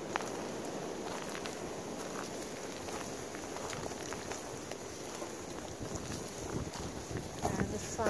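Steady wind noise buffeting the microphone outdoors, with a few faint ticks and rustles.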